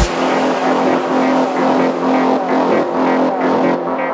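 Techno track in a breakdown: the kick drum and bass drop out at the start, leaving a steady held synth note under a dense, noisy electronic texture. The highest frequencies fade away near the end.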